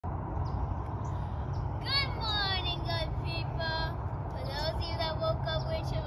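A young girl's high-pitched voice in short phrases, starting about two seconds in, over a steady low rumble.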